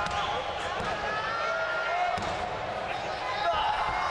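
Referee's hand slapping the wrestling ring canvas in a pin count: a few dull thuds, under overlapping shouts and chatter from the crowd.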